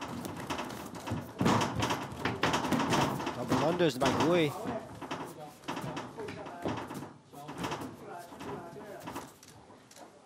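Voices calling out at ringside, loudest in the first half, with a few rising-and-falling shouts about four seconds in, over scattered knocks and scuffs.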